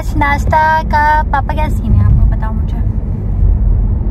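Steady low road and engine rumble inside the cabin of a moving car. A voice sounds over it for about the first second and a half.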